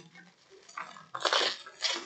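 Plastic bubble wrap crinkling and rustling as wrapped bags of nuts are handled and cut open, in a few short bursts, the loudest just over a second in.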